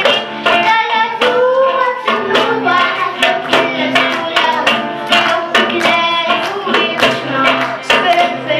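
Live acoustic band: several acoustic guitars strummed together with a goblet drum keeping a steady beat, and children singing the melody into microphones.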